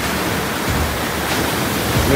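Sea surf washing against a rocky shore: a steady, loud rush of noise.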